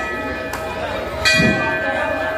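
A puja hand bell ringing, struck again a little over a second in, its tone lingering between strokes. It is rung while the aarti lamp is waved before the deity.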